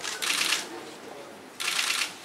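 Camera shutters firing in rapid bursts of clicks: one burst lasting about half a second at the start, and another that starts suddenly near the end.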